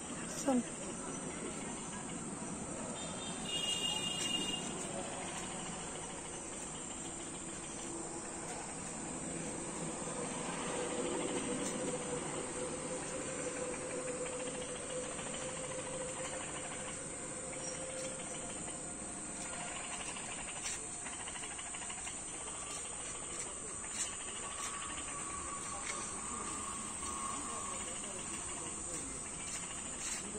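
Steady high-pitched chirring of crickets, with faint voices in the background. About four seconds in there is a brief high tone, like a whistle.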